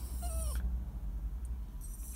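Small dog whining once, a short high cry that falls in pitch about half a second in, over a low steady rumble. The dog is anxious and upset at being left behind.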